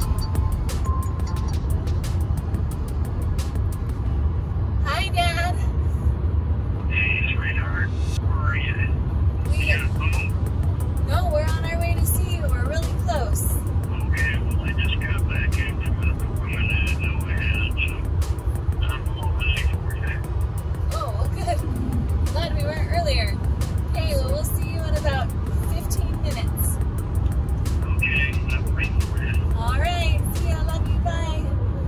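Loud, steady wind and road noise inside a car at highway speed with a window open, the air buffeting the cabin, with voices breaking through now and then.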